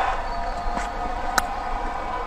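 Steady crowd noise in a cricket ground, with one sharp crack of bat on ball about a second and a half in.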